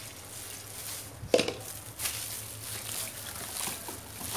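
Alcohol being poured into a basin of freshly thickened homemade soap while it is stirred, a soft wet sloshing and squishing of the lumpy paste. There is a sharp knock about a second in.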